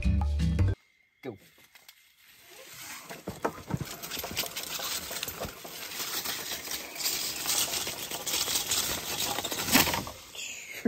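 Background music that cuts off about a second in, then, after a brief hush, dry fallen leaves crackling and rustling underfoot as someone walks over them, with a few light clinks.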